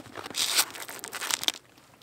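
Fabric rustling and crinkling as a roll-type bikepacking handlebar bag is pressed into place on a bicycle's handlebars, with a few small clicks, stopping about one and a half seconds in.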